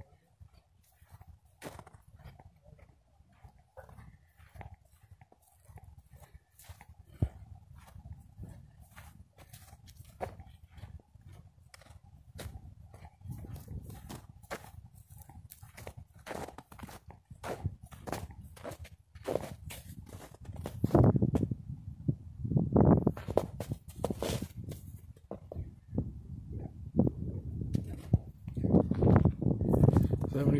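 Footsteps of a person walking on a path covered in thin snow, an even pace of about two steps a second, with louder low rumbles in the last third.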